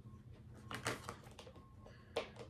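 A few faint, quick clicks and taps clustered about halfway through, from tarot cards being handled.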